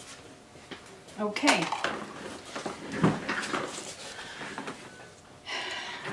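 Handling noises of paint cups and supplies on a table: scattered light knocks and clinks, the loudest a single knock about three seconds in, with a brief low murmur of a woman's voice about a second in.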